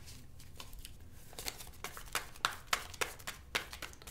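A deck of tarot cards being shuffled overhand by hand: soft, quick card-on-card flicks that start about a second in and come at roughly three to four a second.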